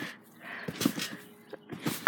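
Someone jumping on a trampoline: a quick run of soft thuds and short squeaks from the mat and springs.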